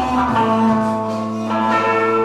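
Electric guitar playing live with long sustained chords, changing to a new chord about one and a half seconds in.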